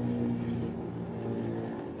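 Steady low hum of a running engine, with several overtones, slowly fading.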